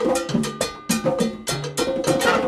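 Live salsa band playing a mambo: a walking bass line under congas, cowbell and drum kit keeping a steady beat, with a held horn note coming in near the end.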